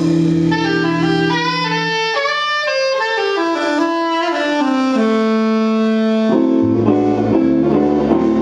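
Jazz soprano saxophone playing a melody that falls in steps to a long held note, with archtop guitar accompaniment; near the end, guitar chords and low bass notes come to the fore.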